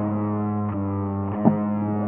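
Raw black metal rehearsal tape from 1994: a distorted electric guitar holds a droning chord, with a drum hit about a second and a half in. The sound is muffled and lo-fi, with no high end.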